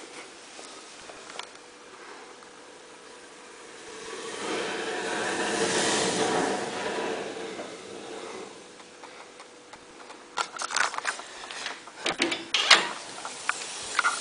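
Sparkler bomb burning in a pot: a hissing rush that swells about a third of the way in and dies back, followed by a run of sharp crackling pops near the end.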